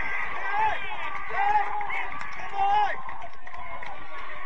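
Excited shouting in celebration of a goal, with three loud, high-pitched yells about half a second, one and a half seconds and nearly three seconds in, over a steady haze of outdoor noise.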